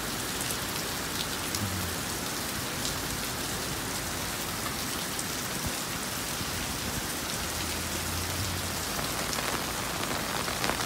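Heavy rain falling steadily on wet pavement and road, with scattered sharp ticks of drops landing close by. A faint low hum comes in twice, about two seconds in and again near nine seconds.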